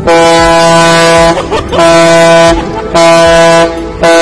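A ship's horn sounding three loud blasts of about a second each, all at one steady low pitch, with a fourth starting right at the end.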